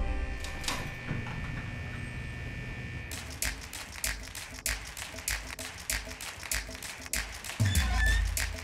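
Film trailer soundtrack: a held high tone for about three seconds, then a steady ticking of about four clicks a second over faint low notes, with a deep bass coming in near the end.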